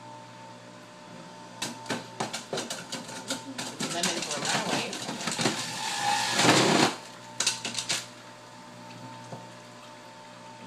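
Handling noise at a kitchen counter: a run of crackles and clatters that thickens over several seconds and peaks in a loud rustling burst about six and a half seconds in, with a few more clicks just after. A faint steady hum sits underneath.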